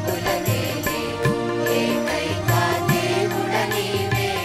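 Mixed choir singing a Telugu Christian devotional song in unison, backed by an electronic keyboard with a steady beat.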